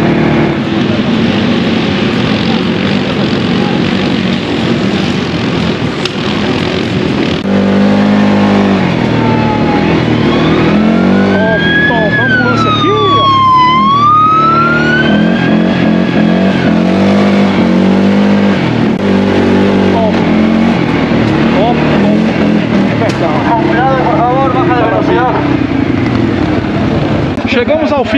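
CFMoto CForce ATV's single-cylinder engine under way on a rough dirt trail, its pitch rising and falling again and again with the throttle. About halfway through a higher whine glides down and back up.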